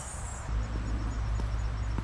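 Steady low wind rumble on the microphone, starting abruptly about half a second in, over faint outdoor background noise.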